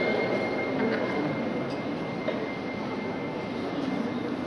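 Steady background noise of a crowded hall, with a faint steady high-pitched whine running through it.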